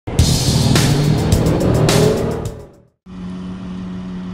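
A car engine revving over music, its pitch slowly rising, ending abruptly about two and a half seconds in. After a moment of silence comes a steady low hum.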